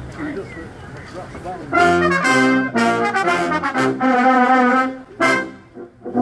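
A brass band of trumpets, cornets, trombones and tubas comes in on the conductor's beat about two seconds in, playing loud full chords in short phrases, with a brief break near the end. Crowd voices murmur before it starts.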